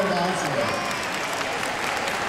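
Audience applauding, with voices in the crowd over the clapping.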